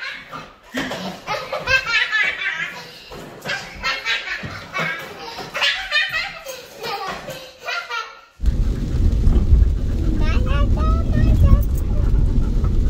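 A young child's high voice babbling and squealing at play. About eight seconds in it cuts off suddenly, and a loud low rumble takes over, with music over it.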